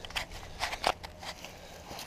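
Footsteps crunching through dry leaves and brush, a few irregular crackling crunches.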